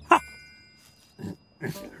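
Cartoon sound effect: a sharp click with a short bright ring that fades over about half a second, as the yellow retractable dog-lead reel is handled, with a man's 'ha'. Near the end come two short grunting mumbles.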